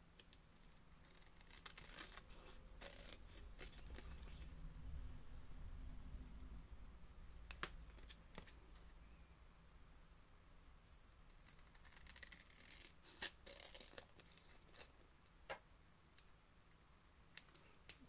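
Scissors snipping faintly through the edge of a laminated plastic pouch: two runs of quick cuts with a few single snips between them.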